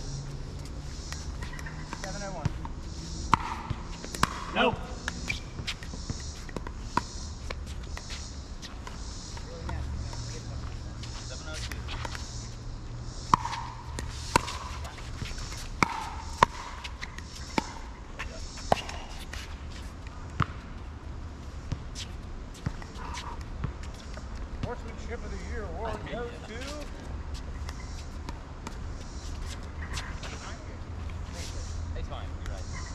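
Pickleball rally: sharp, hollow pops of paddles hitting a plastic pickleball, with the ball bouncing on the hard court. The pops come in two bursts of quick exchanges, about a second or less apart.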